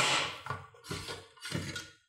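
A sharp click as a hard-drive tray is unlatched in a TerraMaster F2-423 NAS bay, followed by short scraping and rattling as the plastic tray with its drive is slid out.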